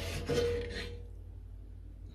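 A slotted spoon scraping and stirring through leeks and bacon in broth in a cast-iron pot, in a short rough burst during the first second. After that there is only a low steady hum.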